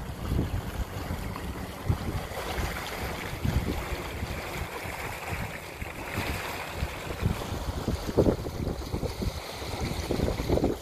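Wind buffeting the microphone over the rush and splash of the wake behind an electric cabin cruiser under way. The low end gusts irregularly.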